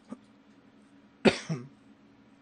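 A man coughs about a second in: one sharp cough followed by a smaller one.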